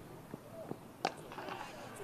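Faint cricket-ground ambience with a single sharp crack of bat on ball about a second in.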